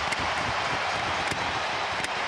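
Hockey arena crowd cheering a save by the home goaltender, a steady wash of noise with a couple of faint sharp clicks.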